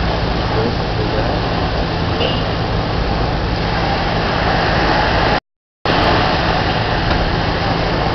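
Loud, steady noise with an even low hum beneath it, cut off by a sudden dropout to silence for about half a second a little past the middle.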